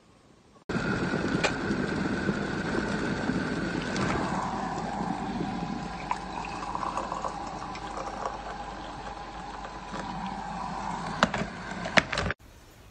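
Hot water pouring from an electric kettle into a ceramic mug, a steady splashing stream that starts suddenly about a second in, its pitch dropping lower at about four seconds. A couple of sharp clicks come near the end.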